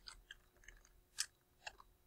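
Faint computer keyboard keystrokes: a handful of separate soft clicks spaced irregularly, with the clearest one a little after a second in.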